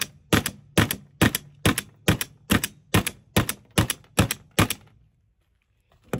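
A pistol slide racked by hooking its mounted Olight Osight red dot on the edge of a wooden bench, about a dozen times. Each stroke is a sharp doubled knock, a little over two a second, and they stop shortly before the end. It is a blunt-force durability test of whether the optic holds its zero.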